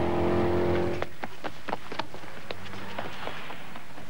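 Racing car engine running at a steady note for about a second, then cutting off suddenly. After it comes a scattered series of sharp taps and knocks.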